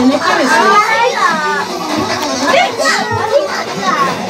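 Lively mix of many small children's high voices calling out and chattering over adults' talk, with no break.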